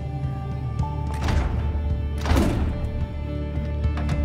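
Tense soundtrack music with a steady low drone, over a jammed handle being worked: scattered knocks and two longer rattling bursts, about one and two seconds in.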